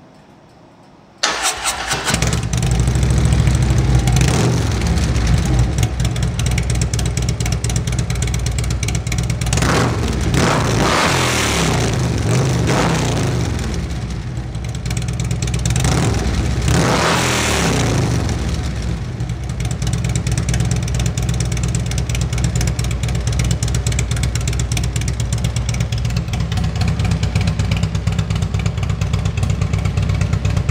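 Harley-Davidson touring motorcycle's V-twin engine, breathing through Vance & Hines Power Duals headers and Rinehart 4-inch slip-on mufflers, starting about a second in and then idling loud. It is revved twice around the middle, then settles back to a steady idle.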